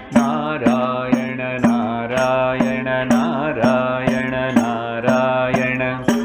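A man singing a devotional name chant, held to a steady beat by a hand-held frame drum with jingles struck about twice a second, over a steady drone.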